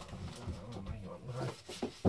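Cardboard LP sleeves rubbing and knocking against each other as a record is pulled out of a tightly packed shelf, with a series of short scrapes and clicks.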